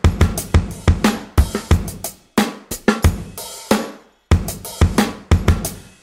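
Sampled drum-kit loop played back from Maschine and triggered by a MIDI clip, a steady beat of sharp hits. The beat cuts out briefly twice, a little over two seconds in and again just after four seconds.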